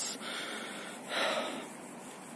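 A person breathing close to the microphone: a faint breath, then a louder one about a second in.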